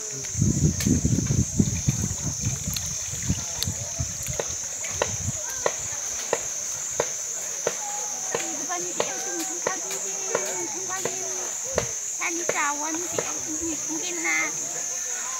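Steady high-pitched droning of insects, with scattered sharp clicks. Low rumbling noise fills the first five seconds, and distant voices call from about seven seconds on.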